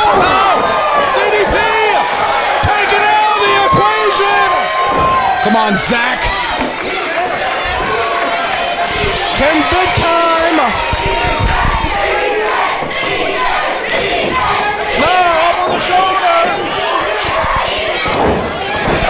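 Live wrestling crowd shouting and cheering, many voices overlapping with long held yells, and a few short thumps among them.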